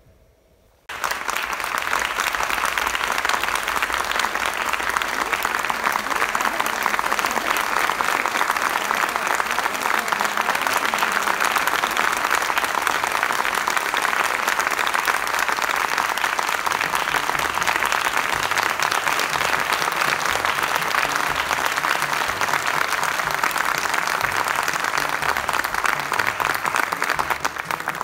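Theatre audience applauding: the clapping breaks out suddenly about a second in and holds as a dense, steady ovation.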